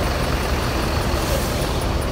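Diesel coach engines idling steadily, a low even rumble.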